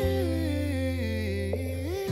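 Background pop music: a wordless, hummed vocal line that glides slowly down in pitch over a held bass note.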